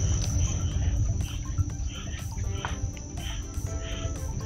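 A steady high-pitched insect drone over a loud low rumble.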